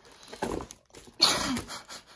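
Two breathy, exasperated exhalations from a woman, one about half a second in and a louder one just past a second in, the second ending with a short falling touch of voice.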